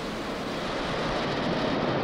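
Steady rushing noise of the Falcon 9 first stage's nine Merlin engines firing during the climb shortly after liftoff.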